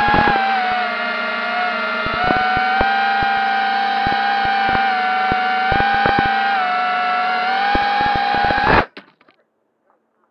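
Quadcopter drone's electric motors and propellers whining steadily, heard up close through the drone's own camera. The pitch dips and rises slightly a few times as it comes down, with scattered clicks. Near the end the motors cut off suddenly as it lands.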